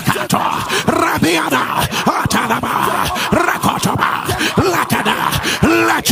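A man's voice praying aloud in tongues, a fast run of short, sharp, staccato syllables, several a second.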